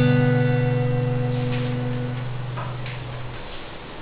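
Acoustic guitar's last chord of a song ringing and slowly fading away, dying out about three and a half seconds in.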